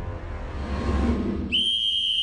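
Low cartoon background music, then a long, shrill blast on a sports whistle starting about one and a half seconds in. The music drops out beneath it.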